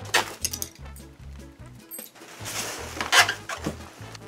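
Background music with a steady bass beat, over which there is handling noise: a short rustle and clatter right at the start, and a longer, louder rustle from about two and a half to three and a half seconds in.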